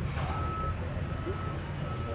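A short, high, steady electronic beep about half a second in, one of a series that repeats every couple of seconds, over a steady low background rumble.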